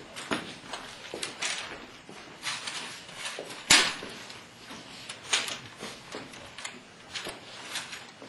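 A pole swung hard through the air in irregular whooshes, about two a second, mixed with shuffling footsteps on a hard floor and a single sharp knock a little before the middle.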